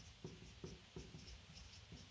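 Dry-erase marker writing on a whiteboard: faint, short strokes, several in a row.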